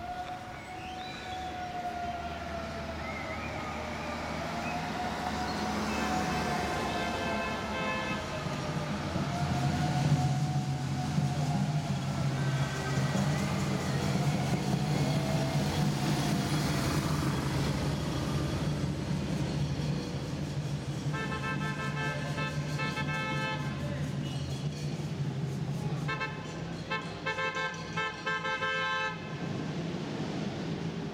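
A siren wailing slowly up and down for the first half, then horn-like blasts sounding in short repeated bursts, twice near the end, over the steady hum of passing engines of the race's lead vehicles.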